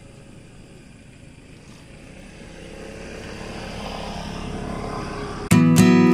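A rushing noise that swells gradually louder for several seconds, then strummed acoustic guitar music cuts in suddenly near the end.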